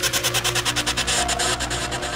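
Goa trance music in a noise-effect passage: a rapid, even stutter of pulsing hiss, about eight pulses a second, over a steady bass line. The stutter stops just before the end.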